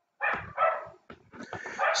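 An animal calling twice in quick succession, the second call longer than the first.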